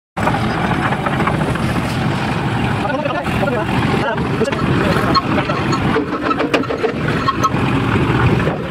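Motorised concrete mixer with a lift hopper running steadily and loud, with a few sharp knocks in the second half.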